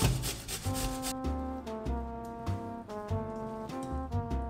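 A potato being grated on the large holes of a stainless steel box grater: repeated rasping strokes. Background music plays underneath.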